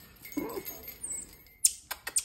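A person laughs briefly, and about a second in a marmoset gives a short, high-pitched chirp. Near the end comes one sharp click, the loudest sound.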